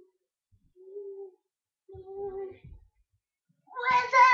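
Three soft, short hummed voice tones about a second apart, each held on one pitch. A much louder, high voice cry begins just before the end.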